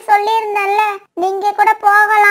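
A high-pitched cartoon character voice dubbed in Tamil, with a short break about a second in.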